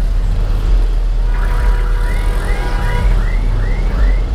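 Low, steady motorcycle engine and traffic rumble. About a second in, an electronic alarm-like warble starts, rising and falling a little over twice a second.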